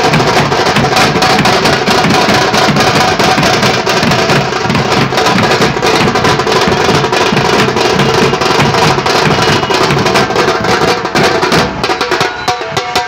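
A street drum band of strap-hung snare-type side drums and large bass drums beaten with sticks, playing a fast, dense, continuous rhythm that thins to more separate strokes near the end.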